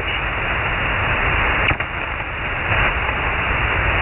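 Steady hiss of band noise and static from a shortwave receiver tuned to 7.200 MHz lower sideband while no station is talking, with a brief click and dropout a little under two seconds in.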